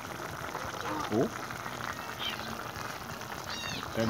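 Pot of paksiw na isda simmering, a steady bubbling hiss. A voice says a rising "oh" about a second in, and a short high-pitched cry comes near the end.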